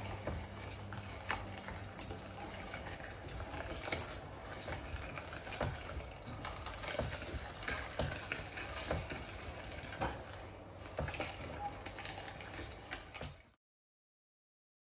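Century-old hand-cranked Alexanderwerk meat grinder being turned, mincing chopped raw vegetables, with wet grinding noise and irregular clicks of the crank and screw. The sound stops abruptly near the end.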